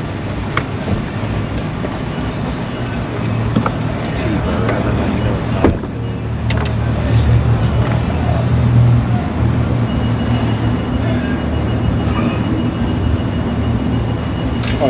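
Car idling, heard from inside the cabin, with a steady low hum that grows stronger in the middle. A couple of sharp clicks come about six seconds in, and a thin steady high tone joins about ten seconds in.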